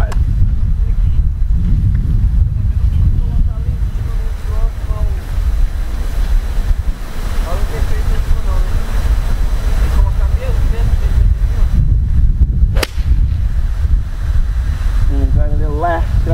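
Wind buffeting the microphone with a steady low rumble, and a single sharp crack about three-quarters of the way through as a golf iron strikes the ball off the fairway.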